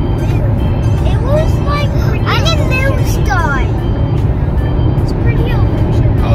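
Steady low rumble of road and engine noise inside a moving car's cabin. A child's high voice slides up and down in pitch, sing-song, in the middle.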